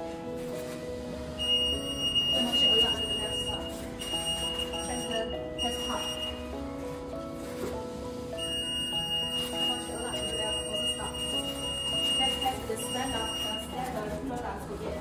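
Conveyor food metal detector's alarm buzzer sounding a steady high-pitched beep twice, each lasting several seconds: first from about a second and a half in, with brief breaks, then again from about eight seconds in. The alarm signals that the detector has caught the metal test pieces on the test cards, first the non-ferrous one and then the stainless-steel one. Background music runs underneath.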